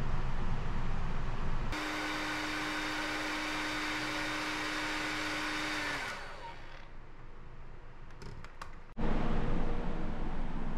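Panasonic hair dryer running with a steady hum and rush of air, then switched off about six seconds in, its pitch falling as the motor spins down. A low rumble comes before it and returns near the end.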